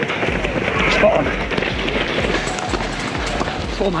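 Marathon race-course din: the patter of many runners' footsteps on the road under a steady murmur of spectators' and runners' voices, dotted with sharp clicks and knocks.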